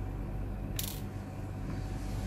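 Steady low electrical hum, with one short, high, hissy clink or rattle about a second in.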